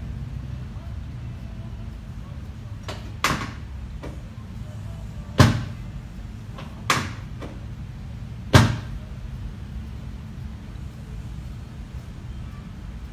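Four sharp knocks about a second and a half apart, the second and fourth the loudest, over a steady low hum.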